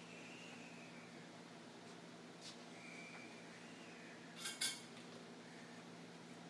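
A marker pen drawing on a paper easel pad: faint, thin, high squeaky strokes. About four and a half seconds in come two sharp clicks close together, the loudest sounds, over a faint steady low hum.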